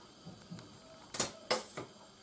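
Three sharp clicks in quick succession about a second in, from a honey container's lid being opened and handled.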